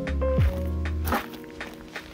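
Background music: held chords over a beat, with a deep thud falling in pitch about half a second in and a sharp hit about a second in.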